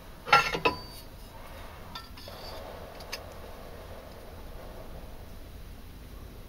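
Steel knife blade being handled: a quick cluster of sharp metallic clinks near the start, then a few faint taps over a low, steady background hum.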